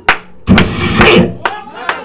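A voice calling out without clear words, punctuated by a few sharp percussive hits, one right at the start and two close together near the end.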